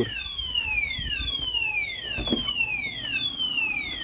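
Repeating electronic alarm, a 'tyoon tyoon' made of high falling-pitch whistles, about two a second, each sweep sliding down before the next one begins. One short knock sounds a little past halfway.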